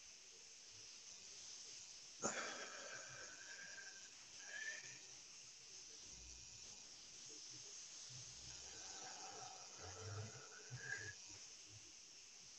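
Faint, slow, controlled breathing through the nose in a three-second box-breathing rhythm: one breath drawn in starting about two seconds in and, after a pause, one let out near the end. A sharp click marks the start of the in-breath.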